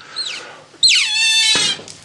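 A guinea pig gives a short high squeak. Then comes a loud shriek that slides down in pitch and holds, with a sharp knock about one and a half seconds in.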